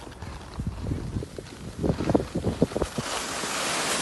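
Sliding downhill over packed, chopped-up snow: a run of irregular knocks and scrapes, then a rising hiss of wind and snow noise on the microphone near the end as speed picks up.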